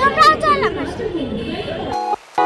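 Speech: a girl talking close to the microphone, loudest in the first second, then fainter talk over steady background chatter.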